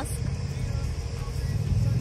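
A parked car's engine idling with a low, steady hum that grows a little stronger near the end, with faint music alongside.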